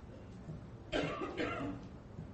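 A brief cough about a second in, much quieter than the preaching around it.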